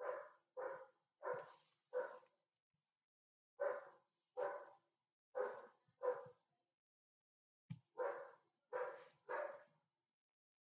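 A dog barking in the background: about eleven short barks in three runs of three or four, a little over half a second apart, with a short knock just before the last run.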